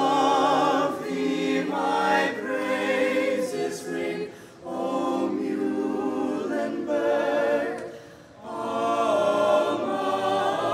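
A choir singing unaccompanied in long held phrases with vibrato, pausing briefly about four and a half and again about eight seconds in.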